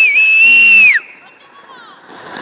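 A loud, shrill whistle held steady, with two brief dips in pitch, then sliding down and stopping about a second in.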